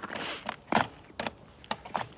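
Handling noise from a hand-held action camera: a short rush of noise on the microphone, then a few short clicks and knocks.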